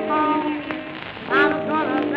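Early blues record transfer playing a wordless passage: pitched notes that bend and waver, over the crackle and clicks of old shellac record surface noise.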